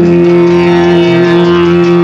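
Tamil film song from the 1970s: one long note held steady through the whole stretch, over the song's accompaniment.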